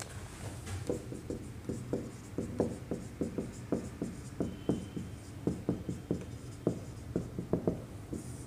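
Marker pen writing on a whiteboard: a run of short, irregular strokes and taps as the letters of a heading are drawn.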